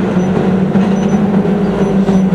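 A pack of saloon stock car engines running at racing speed: a steady, loud drone.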